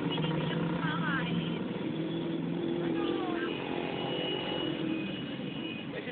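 Street traffic: a motor vehicle engine running steadily nearby, its hum shifting pitch midway, with faint background voices.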